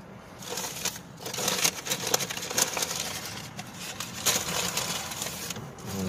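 Paper fast-food sandwich wrapper crinkling and rustling as it is handled and opened, in quick irregular crackles.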